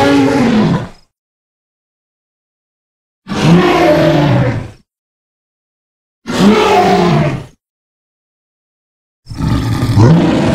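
Tarbosaurus roar sound effects: a roar ending about a second in, then two separate roars each about a second and a half long with complete silence between them, and a fourth starting near the end.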